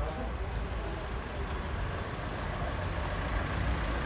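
Street traffic noise: a steady low engine rumble from passing vehicles, with faint voices in the background.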